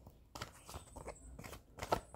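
Faint handling noise from a deck of tarot cards held in the hand: a string of soft clicks and rustles as the cards are moved against each other.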